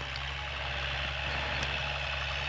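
An engine running steadily somewhere off, a constant low hum with some hiss above it.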